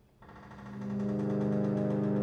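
A c.1868 Christophe & Etienne harmonium's free reeds sounding a held tone in the bass on the sordine (muted) stop: the number one stop's reeds with their air supply partly cut off, giving a very quiet version of that stop. The tone swells in over the first second and then holds steady.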